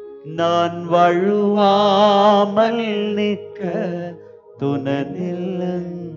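A man singing a slow, wavering worship chant over sustained keyboard chords, in two phrases with a short break a little after four seconds in.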